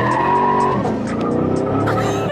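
A car's engine revving hard under acceleration, heard from inside the cabin, with tyres squealing through a turn until about a second in. The engine note climbs again near the end.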